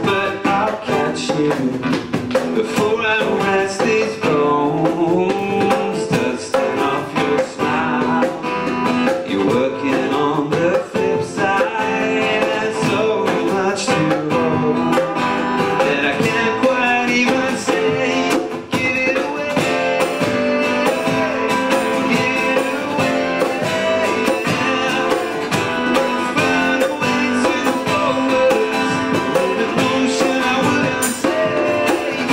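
Live acoustic rock song: acoustic guitars strummed and picked, playing steadily throughout.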